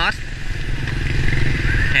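Motorbike engine running steadily as it passes close by.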